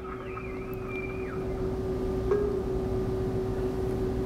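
A steady hum on one unchanging pitch over a low rumbling background, with a faint wavering whistle-like tone in the first second or so.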